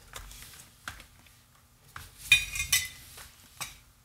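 Small glass light bulbs with brass bases clinking against each other and the plastic compartment walls as a hand rummages through a parts organizer. A few separate clicks, then a quick cluster of bright clinks a little past halfway, and one more click near the end.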